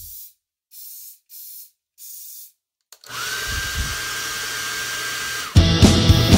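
Start of a street-punk song: four short hi-hat-like strokes count in, then a held, buzzing distorted guitar with a high feedback whistle that rises and then holds. About five and a half seconds in, the full band of drums, bass and guitar crashes in loud.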